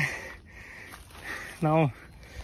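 Speech breaks off, followed by a pause holding only a faint breathy noise, then one short spoken syllable with falling pitch near the end.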